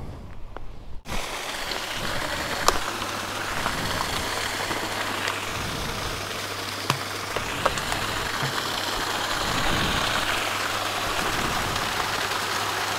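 Water pouring over the edge of a concrete tank and splashing onto rocks in a steady rush, with the Honda Africa Twin's parallel-twin engine idling low underneath. A few small clicks sound through it.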